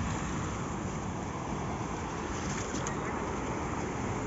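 Steady wash of sea surf, mixed with wind noise on the microphone.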